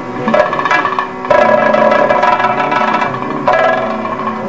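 Kathakali accompaniment music: a vocal line holds a long note over a steady drone. Sharp metallic strikes from the chengila gong and ilathalam cymbals come a little after the start and again near the end.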